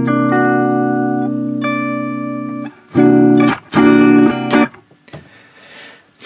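Electric guitar playing a C6/9 chord with an added sharp 11 and seventh: the chord is struck and left to ring for about two and a half seconds, fading, then strummed twice more in short, clipped strokes about a second apart.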